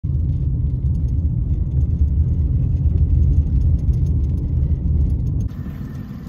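Steady low rumble of a vehicle driving along a dirt road, heard from inside the cab, that cuts off suddenly about five and a half seconds in.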